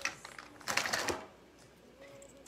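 Small plastic makeup containers clicking and clattering as they are handled and rummaged through, in a short burst about half a second to a second in, then quiet.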